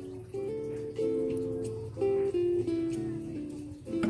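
Background music: acoustic guitar playing held notes and chords that change every half second or so.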